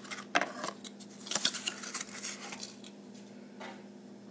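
Hands handling a cardboard cosmetic box and a plastic blush compact: a string of light clicks, taps and rustles, thickest in the first couple of seconds and then trailing off.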